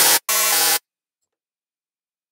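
Parsec 2 software synthesizer sounding two short, bright pitched notes, the second beginning about a third of a second in and cutting off sharply under a second in.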